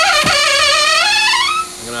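A person's voice holding one long wavering note that rises in pitch and breaks off shortly before the end, with a faint steady hum beneath.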